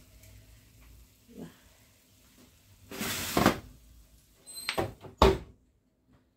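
Oven rack with a tray of turkey wings pushed in with a short scrape, then the oven door shut with two clunks about five seconds in, the second the louder.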